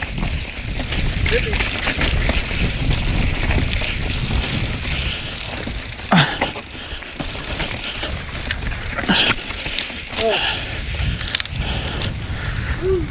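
Mountain bike rolling down a rocky trail, its tyres and frame rattling over granite slabs and dirt, with a steady rush of wind on the microphone.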